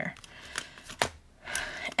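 Clear plastic zippered cash envelopes rustling and crinkling as they are handled and turned over in a ring binder, with one sharp click about a second in.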